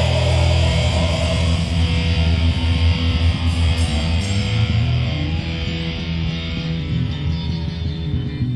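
Live rock band playing an instrumental passage without vocals, led by electric guitar over heavy bass and drums, easing off slightly toward the end.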